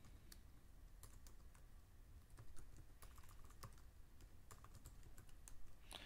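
Faint, irregular keystrokes of a computer keyboard while text is typed.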